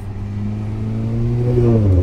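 Turbocharged Audi A4 engine, fitted with a downpipe and three-inch exhaust, revving up under acceleration with its pitch climbing, heard from inside the cabin. Near the end the pitch drops suddenly as the Multitronic gearbox, in manual mode, shifts up a gear.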